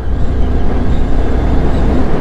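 Motorcycle cruising at about 55 km/h: a loud, steady low rumble of engine and wind rushing over the on-bike microphone.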